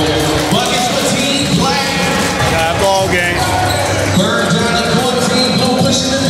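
A basketball bouncing on the hardwood floor of a large gym, heard over voices and music.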